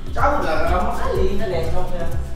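A woman crying, a wavering whimpering sob that starts just after the beginning and fades near the end, over background music with a steady beat.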